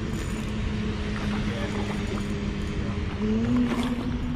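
Ultralight spinning reel being cranked to bring in a hooked fish, under a steady low hum that steps up slightly in pitch about three seconds in.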